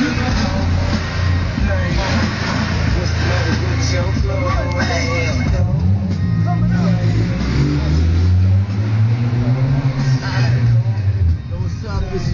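Vehicle engine revving, its pitch rising and falling several times in the second half, over rap music with vocals.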